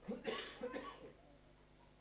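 A person coughing: two short bursts in the first second, then quiet.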